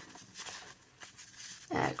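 Soft rustling of a vellum envelope and paper stickers being handled, two faint brushes of paper.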